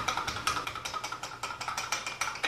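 A short added reveal sound effect: rapid, even ticking over a faint held tone.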